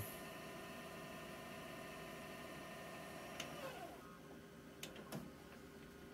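VHS deck of a GoVideo VR4940 DVD/VCR combo rewinding a tape: a faint, steady motor whir that winds down about three and a half seconds in, followed by a few soft mechanical clicks from the tape transport.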